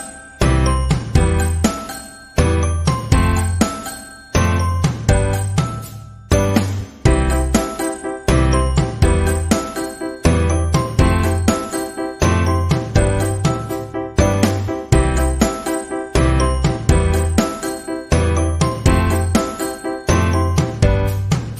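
Background music: short struck notes that die away quickly, over a bass line repeating at a steady beat.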